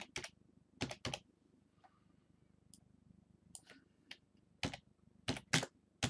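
Typing on a computer keyboard: short, sharp key clicks in irregular pairs and small groups, the loudest pair about five and a half seconds in.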